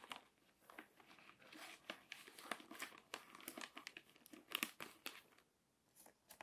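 Crinkly paper being handled and sorted by hand: a close run of crisp crackles and rustles that dies down about five seconds in.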